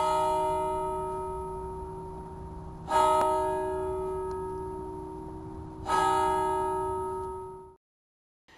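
A deep bell struck three times, about three seconds apart, each stroke ringing on and slowly dying away; the last ring fades out quickly near the end.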